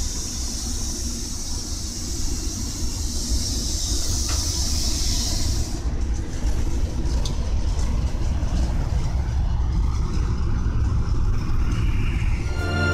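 Railway shovel-type snow cleaner passing close by: a steady low rumble of the train, with a high hiss over it that stops about halfway. The rumble grows louder after that.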